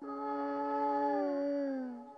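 Long, held howling tones, two pitches sounding together, that slide down near the end. A similar howl follows about half a second later.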